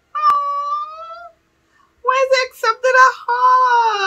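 A woman's high-pitched voice making wordless sounds: one held note lasting about a second, with a click just after it begins, then after a short pause a quick run of high voice sounds.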